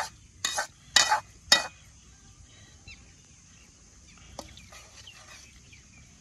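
A metal utensil clanks against metal cookware three times, about half a second apart, each strike ringing briefly. The noodles are then handled more quietly in the pot, with one small click near the end.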